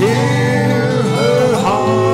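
A male voice singing a slow country-style ballad over guitar accompaniment.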